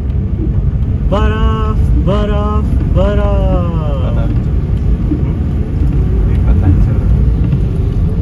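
Steady low rumble of a car driving on a wet road, heard from inside the cabin. In the first half a voice holds a few long, falling sung notes.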